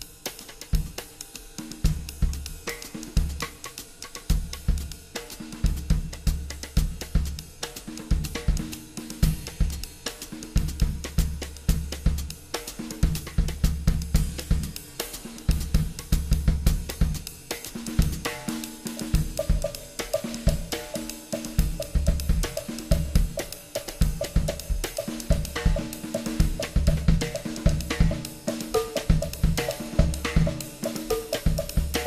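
Solo drum kit (Yamaha drums, Zildjian cymbals) playing a groove in five, a "big five" that also leans toward a six-eight feel, with bass drum, snare, hi-hat and cymbals in a steady rhythm. A higher repeated note joins the pattern about two-thirds of the way through.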